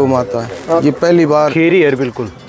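Speech only: a man's voice talking.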